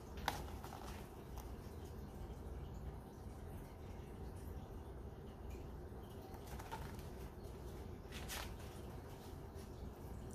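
Quiet room hum with a few faint rustles and taps from a hardcover picture book as it is held up and its open pages are handled, the sharpest tap just after the start.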